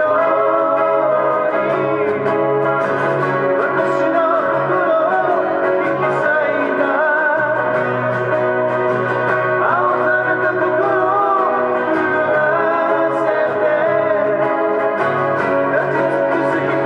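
Two acoustic guitars played together as a live song accompaniment, with a man singing a melody over them through a microphone, steady and unbroken throughout.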